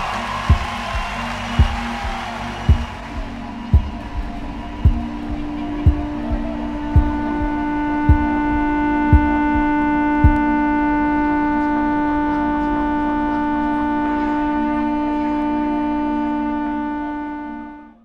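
A rock band's drums and guitar played live through a PA. A kick drum beats slowly and evenly about once a second, then stops about ten seconds in, while a held, droning electric-guitar note with feedback swells up partway through, rings on and fades out at the very end.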